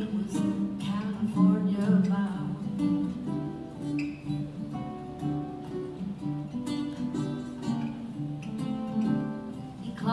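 Swing-style instrumental passage played on an archtop jazz guitar and a baritone ukulele: a run of plucked melody notes over chords.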